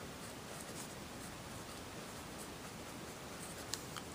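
Parker fountain pen nib scratching faintly across notebook paper as block letters are written, with a light tick near the end.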